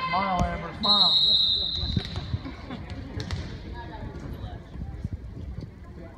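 A referee's whistle blows once, a steady high tone held for about a second, just after short shouted calls from players. A volleyball then bounces on the hardwood gym floor a few times, the knocks thinning out toward the end.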